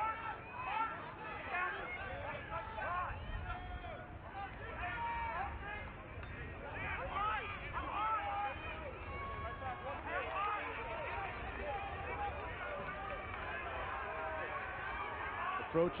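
Field-level shouting of lacrosse players and coaches during live play: many voices calling out at once, overlapping, over a low outdoor stadium background.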